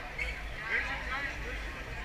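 Crowd chatter: many overlapping, indistinct voices over a steady low rumble.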